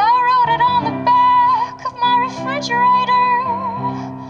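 A woman singing live into a microphone, holding long notes with slight wavers, over sustained electronic keyboard chords.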